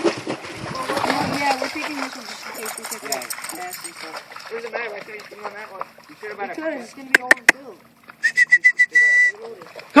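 A dog wading and splashing in shallow lake water. About seven seconds in come three sharp clicks, then a fast run of high chirps that ends in a short held note.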